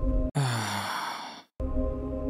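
A man's breathy sigh, falling in pitch, about a second long, starting about a third of a second in. Before and after it, a sustained, low, droning music bed.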